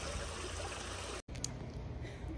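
Shallow creek water running over rocks, a steady rushing that cuts off abruptly a little over a second in. A quieter outdoor hush follows.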